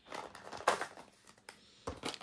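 Small clear plastic diamond-painting drill containers clicking and rattling against one another and the plastic storage case as they are set in by hand: a few scattered clacks, with a sharp one near the end.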